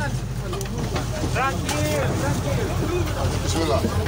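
Several people's voices shouting and calling out over one another in an agitated crowd, over a steady low rumble.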